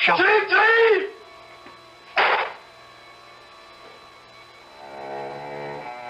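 A man's cry, then about two seconds in a single short gunshot sound effect. Low, sustained music chords come in near the end.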